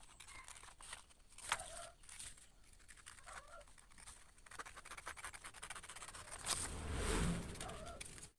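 Scissors cutting a sheet of paper pattern, with the paper rustling as it is handled: quiet snips and ticks, and a longer rustle near the end. Faint chicken clucks in the background.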